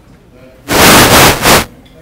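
A sudden, very loud burst of noise, about a second long, in three quick surges that overload the recording.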